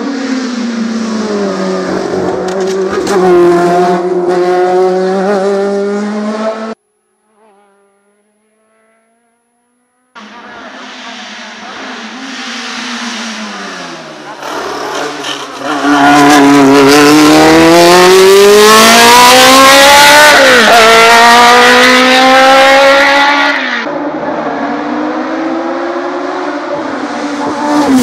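Osella PA9/90 sports prototype racing car's engine: revs drop as it brakes into a hairpin, then climb as it pulls away; the sound cuts to near silence for about three seconds around a third of the way in. From about halfway it is much louder and closer, the pitch rising hard through the gears with a quick drop at a gear change, before falling back to a more distant engine near the end.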